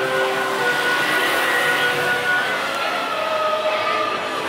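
Busy street traffic noise, steady throughout, with several held tones that slowly drop in pitch in the second half.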